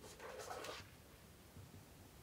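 A small book being opened in the hands: a faint, brief rustle of its cover and pages in the first second.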